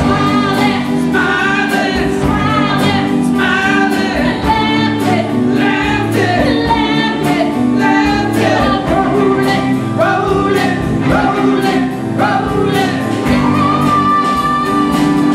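Live band playing a song, with several voices singing together over guitars and keyboard and a steady drum beat.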